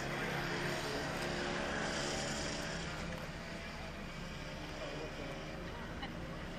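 A motor vehicle engine running steadily, slightly louder in the first half, with faint voices in the background.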